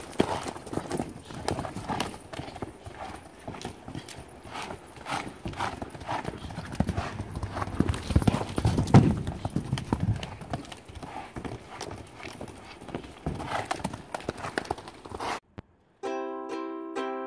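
Hoofbeats of a saddled horse moving round a sand pen in a steady, regular rhythm, picked up close from the saddle itself. There is a louder, deeper stretch about halfway through.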